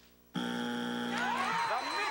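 Game-show wrong-answer strike buzzer sounding: a harsh, steady buzz starting about a third of a second in and lasting about a second, signalling that the answer is not on the board. It is followed by studio audience applause and cheering.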